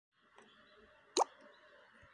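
A single short click with a quick downward drop in pitch, a plop-like sound, a little over a second in, over a faint steady hiss.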